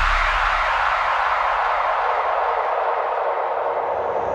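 Hardstyle track breakdown: the kick and bass fade out, leaving a synthesized white-noise sweep that hisses without a beat, its highest hiss dying away toward the end.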